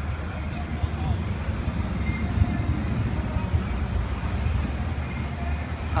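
Steady low rumble of indoor background noise with faint voices in the distance.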